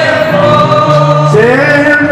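Live Argentine folk zamba with guitars and several voices singing together, loud and steady; a sung note glides upward about a second and a half in.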